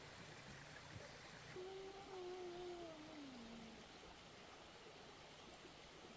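A cat meowing: one long drawn-out call that slides down in pitch, faint against a quiet outdoor background.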